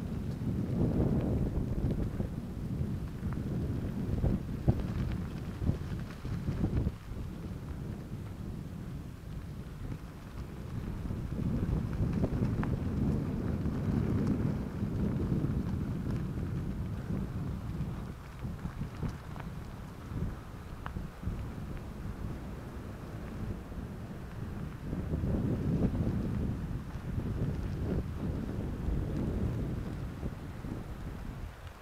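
Wind buffeting the microphone of a camera riding on a moving bicycle, a low rumble that swells and fades in waves. Underneath are bicycle tyres rolling on a gravel road, with occasional clicks and rattles.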